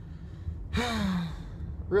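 A man's long sigh, breathy with a little voice in it, falling in pitch, about a second in.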